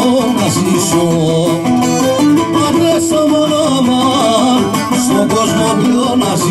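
Greek folk band playing a syrtos dance tune through the PA, with plucked strings under a flowing melody line at a steady, unbroken level.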